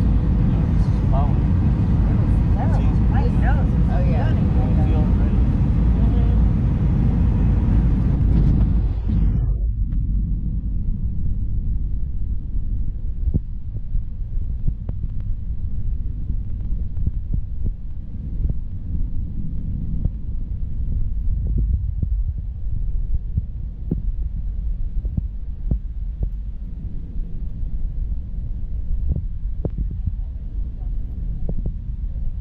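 Steady low rumble of an Airbus A319's cabin in flight on descent, from its engines and the airflow. About nine seconds in, the higher part of the sound cuts off suddenly, leaving only the low rumble with faint scattered ticks.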